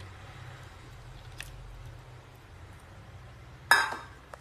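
Faint pouring and stirring in a pan of potato curry over a low steady hum, then near the end a single sharp metallic clink with a short ring as the steel pouring vessel knocks against metal.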